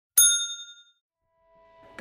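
A single bright bell 'ding', the notification-bell sound effect of a subscribe animation, struck once and ringing out over about half a second. Faint music fades in near the end.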